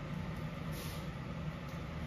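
Steady low hum of the training hall's room noise, with a brief swish of a cotton taekwondo uniform about three-quarters of a second in as the performer moves through the Koryo form.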